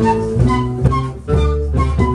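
Andean-style flute ensemble, transverse flutes with a quena, playing a rhythmic folk melody over a low bass line, the notes changing about every half second.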